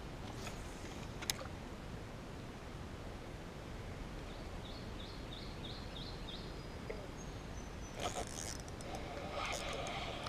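Quiet outdoor background by a pond, with a bird giving a quick run of about six high chirps midway and a single sharp click about a second in. Brief rustling and handling noise from the spinning reel and rod near the end.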